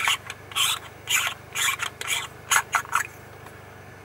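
Threaded rings of a wide-angle/macro lens adapter scraping as the macro element is unscrewed from the wide-angle element by hand, in about five short strokes over the first three seconds.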